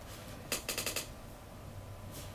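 Paper ballot sheet and pen being handled: a quick run of four or five crisp clicks and rustles about half a second in, over a faint steady hum.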